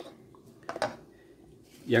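Wooden spoon stirring chopped onion, tomato and green pepper in an aluminium pot, with a couple of short scrapes against the pot less than a second in.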